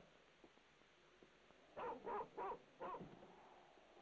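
A woman sobbing: four short sobs in quick succession about two seconds in, over a faint steady hiss.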